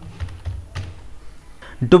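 Computer keyboard being typed on, a few separate key clicks.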